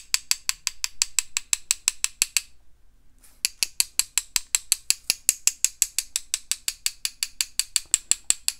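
Paintbrush rapped rapidly against the handle of a second brush to splatter watercolor paint off the bristles: a quick run of sharp clicks, about six a second, broken by a short pause after about two and a half seconds before the tapping resumes.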